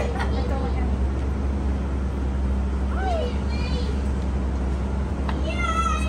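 Steady low hum of a stretch limousine's engine idling at the curb, with short high-pitched voice sounds: a falling cry about three seconds in and another just before the end.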